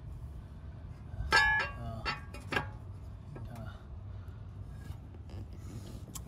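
Metal-on-metal clinks: one bright ringing clink about a second in, then two lighter taps, over a low steady hum.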